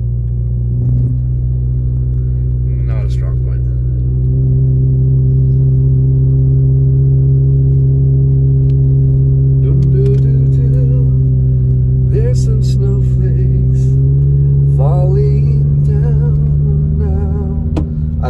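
Car engine drone heard from inside the cabin while driving, a steady low hum that grows louder about four seconds in. It rises slightly in pitch later on and drops back near the end.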